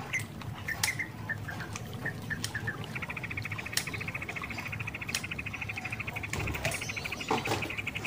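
Scissors snipping into a tape-wrapped plastic bottle cap, a few sharp separate snips, over background bird chirping. About three seconds in, a rapid, high, even trill starts and keeps going.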